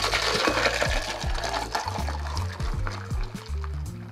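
A shaken vodka, pineapple and coconut cocktail free-poured from a cocktail shaker into a glass of ice: a steady splashing pour with some clinking of ice, fading out near the end, over background music.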